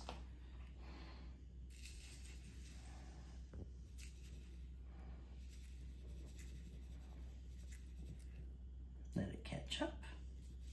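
Faint, scratchy sound of granulated sugar being added to a bowl on a kitchen scale, with a few small clicks, over a low steady hum.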